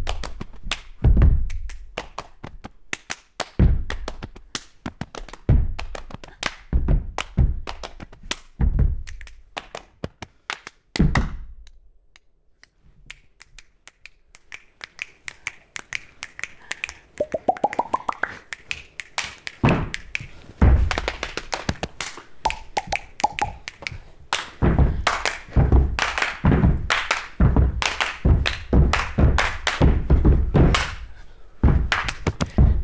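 Body percussion by two performers: foot stamps on the floor, hand claps and finger snaps played in rhythm, with heavy stamps about every two seconds. It drops away about twelve seconds in, a short rising tone is heard, then it builds to a faster, denser pattern of stamps and claps.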